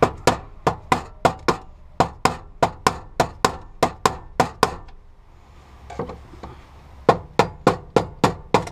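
Hammer tapping a screwdriver against a fuel pump lock ring to drive it around and unscrew it, done without the special removal tool. Rapid, sharp taps come about four to five a second, stop a little before halfway, and start again near the end.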